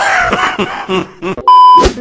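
A man laughing, breathy and wheezy, tailing off over the first second and a half, then a short, loud, steady bleep sound effect near the end.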